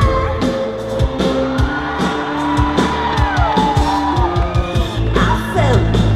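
Live rock band playing with a steady drum beat and a sliding melody line over bass guitar.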